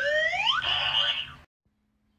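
Cartoon sound effect: a pitch sliding upward for about a second, going straight into a short buzzy noise that cuts off about a second and a half in.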